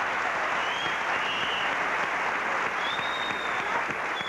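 Audience applauding: dense, steady clapping from a large crowd.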